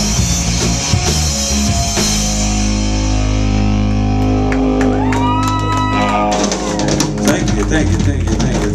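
Live rock band of electric guitar, bass and drum kit playing, then holding a long final chord that rings out as the song ends. Scattered clapping starts near the end.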